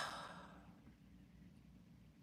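A woman's sigh: one audible breath out that starts suddenly and fades over about half a second.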